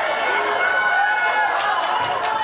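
Basketball players' sneakers squeaking on a hardwood court as they run and cut, over voices and crowd murmur in a large hall, with a couple of sharp taps near the end.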